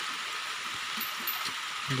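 Heavy rain falling, a steady hiss, with a few faint knocks.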